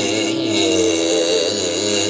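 Male Carnatic vocalist singing with wavering, ornamented pitch glides (gamakas) over a steady drone.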